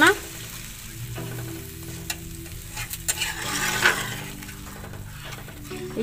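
Steel spatula stirring a freshly watered potato-and-pea curry gravy in a kadai on a gas stove, with steady sizzling and a few sharp taps of the spatula against the pan.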